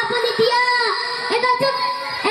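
A boy singing into a microphone through a PA system, his voice gliding up and down between held notes.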